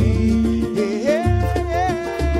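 Live pagode samba music: a cavaquinho strumming and a pandeiro tambourine over low held bass notes, with a melody line gliding above.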